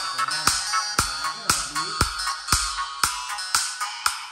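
Electronic dance music with a steady beat of about two strikes a second, played through a JBL neodymium treble compression driver on a horn as a test. The sound is thin and mostly treble.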